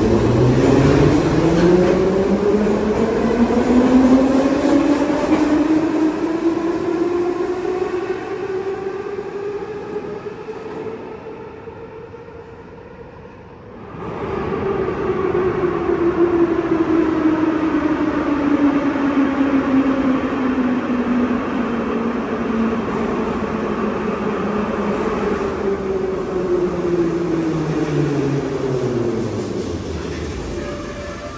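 A metro train pulling out of the station, its electric traction motor whine rising in pitch as it gathers speed, then fading away. From about halfway, another metro train approaches and slows into the platform, its whine falling steadily in pitch as it brakes.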